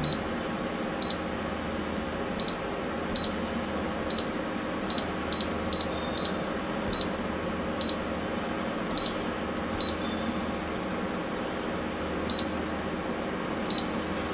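Touchscreen control panel of a roll forming machine beeping briefly at each key press as numbers and settings are entered, about fifteen short high beeps at irregular intervals. A steady low hum runs underneath.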